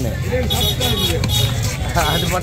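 People talking in the background over a steady low rumble of traffic.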